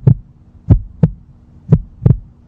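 Deep thumps in pairs, the second a third of a second after the first, repeating about once a second like a heartbeat, over a faint steady hum.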